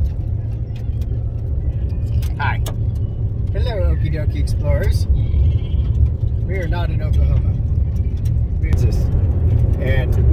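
Steady low road and engine rumble inside a moving car's cabin. A young child's high voice calls out or babbles briefly several times over it.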